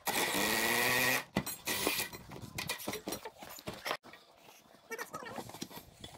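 Cordless impact wrench running in one burst of about a second, spinning a wheel nut off a tractor's rear wheel hub. Scattered metal clanks and knocks follow as the nuts and wheel are handled.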